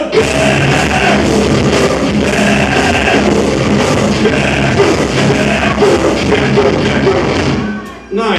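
Live rock band playing loud: distorted electric guitar, bass guitar and drum kit together, breaking off suddenly near the end.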